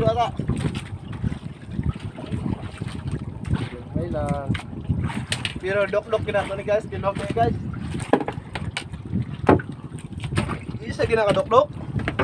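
A man's voice in short phrases over a steady low rumble of wind and sea around a small outrigger fishing boat, with scattered light knocks on the boat.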